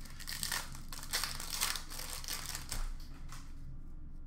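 Wrapper of a Panini Prizm basketball card pack crinkling and rustling in irregular bursts as it is opened and handled, dying away near the end.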